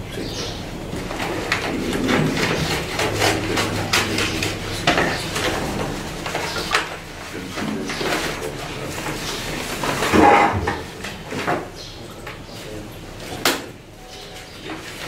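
Paper and a manila envelope being handled on a table, with irregular rustling and crackling as sheets are drawn out and leafed through; a louder rustle comes about ten seconds in.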